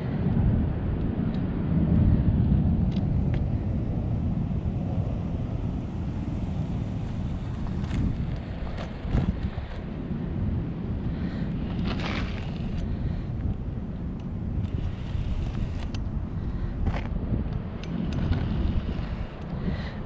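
Wind rumbling on the microphone, with a few short scrapes and knocks scattered through it.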